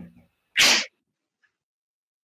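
The tail end of a woman's laughter, then a single short, loud, breathy burst about half a second in, like a sharp huff of air or a sneeze.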